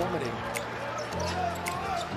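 A basketball bouncing on a hardwood court, a few sharp impacts about a second apart, over steady background music.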